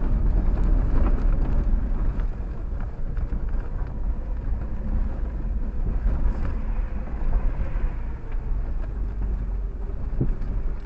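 Off-road vehicle crawling over a rocky dirt trail, heard from inside the cab: a steady low rumble of engine and tyres, with small knocks and rattles as it rolls over the rocks.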